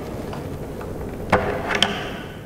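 Hard plastic splash guard of a handheld concrete saw being unclipped by hand: a sharp click about two-thirds of the way in and a lighter one just after, over a steady hiss.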